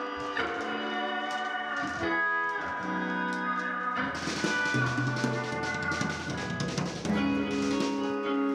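Instrumental band music: held chords on electric guitar, with a drum kit and cymbals coming in about halfway through along with low bass notes.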